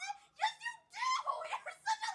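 A young woman's high-pitched squeals of excitement: several short gliding cries in quick succession.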